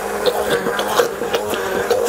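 Hand-held stick blender running steadily in a plastic beaker, blending mascarpone, yogurt and sugar into a cream: a steady motor hum with a few light taps.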